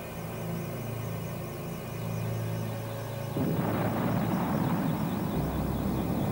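A steady low jet-engine drone. About three and a half seconds in, it gives way to a louder, noisy explosion sound that carries on, with deep bass joining near the end.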